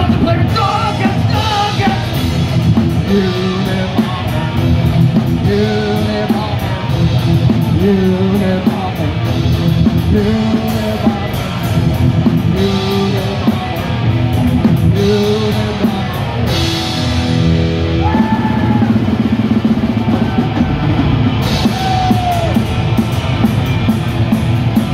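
Live death metal band playing loud: drums and cymbals, heavy guitar and shouted vocals, heard through the room from the crowd.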